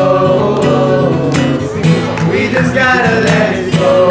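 Acoustic guitar strummed while several young men sing along together.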